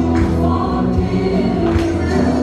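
Gospel music: a choir singing sustained notes over a steady bass line, with a couple of sharp accents from the band.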